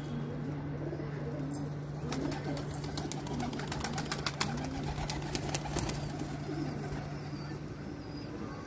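Domestic pigeons, Shahjahanpuri kaldume high flyers, cooing in low, wavering calls, with a quick run of sharp clicks through the middle and a steady low hum underneath.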